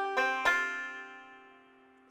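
Five-string banjo fingerpicked in a 5-2-1 forward roll on an F chord: the last notes of the roll are plucked in the first half second, then the strings ring on and fade away.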